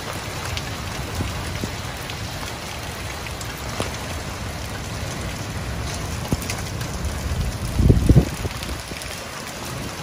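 Steady rain falling, with a brief louder low rumble about eight seconds in.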